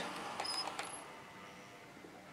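A Bachmann Class 150/2 model train's running noise on the track, faint and fading as it slows to a stop. A couple of brief high squeaks come about half a second in; the owner isn't sure they come from the wheels.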